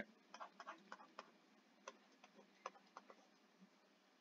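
Faint, irregular ticks and taps of a pen stylus on a drawing tablet or touch screen while drawing strokes, a dozen or so light clicks spread unevenly over the few seconds.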